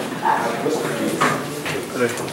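Indistinct chatter of several people talking at once in a council chamber.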